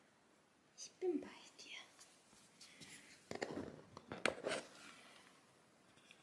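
A person whispering softly, with a cluster of sharp clicks and knocks a little past the middle.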